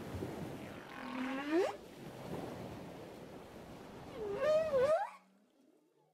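Two long, gliding animal-like calls over a steady rushing noise like surf. The first swoops upward about a second in; the second wavers up and down near the end. Then the sound cuts off abruptly.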